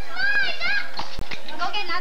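Young children's high-pitched voices chattering in play, rising and falling in pitch, with a couple of light knocks about a second in.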